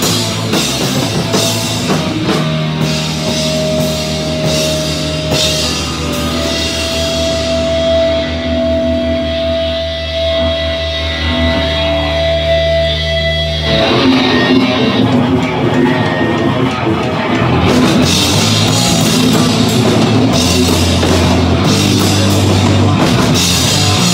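Live rock band playing loud with distorted electric guitars, bass and drums. A few seconds in the cymbals drop away and a long held note rings over sustained low notes for about ten seconds. The full band comes back in about fourteen seconds in, with the cymbals returning soon after.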